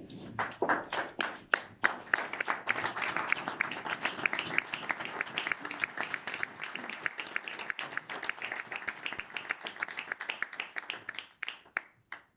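A small group of people applauding by hand: many quick overlapping claps that carry on for about eleven seconds, then die away near the end.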